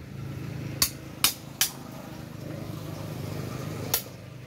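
Wooden xiangqi (Chinese chess) pieces clacking onto the board as moves are played: four sharp clicks, three in the first two seconds and one near the end. A steady low hum runs underneath.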